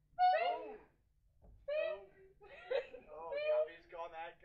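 High-pitched young voices vocalising without clear words: a short falling cry at the start, then, after a brief pause, a run of short high-pitched cries and vocal sounds.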